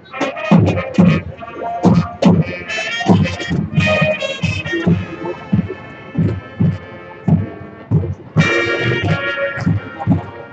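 High school marching band playing, with brass over drums and front-ensemble percussion making sharp accented hits. A loud held brass chord comes in about eight and a half seconds in.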